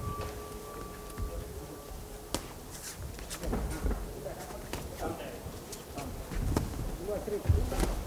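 The boxing ring bell's ring fades out at the start. Then come sparse, sharp smacks and knocks of boxing gloves and feet on the ring canvas as the opening round gets under way, with faint shouts around the ring.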